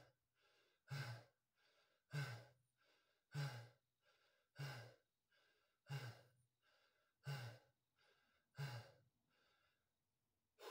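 A man breathing hard and fast in recovery from exhaustion after hundreds of burpees: a strong, loud exhale about every second and a quarter, with a quieter in-breath between each.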